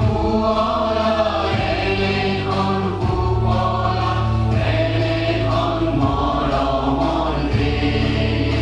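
An anthem sung in chorus by a standing crowd, with steady instrumental backing underneath. The notes are long and held, and the backing changes to a new chord every few seconds.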